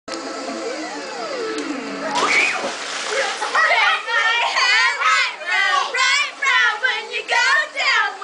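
High-pitched girls' voices calling out and shrieking, with a rising squeal a couple of seconds in, over water splashing in a swimming pool.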